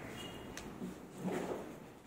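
Quiet room tone with a single sharp click about half a second in, and a faint low murmur near the middle.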